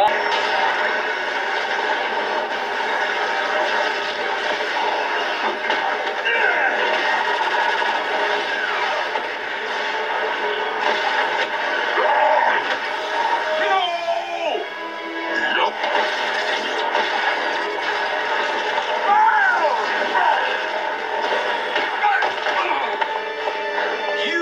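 Background music with fight sound effects from an animated TV show's soundtrack, recorded off the TV's speaker, with a few sweeping glides in pitch.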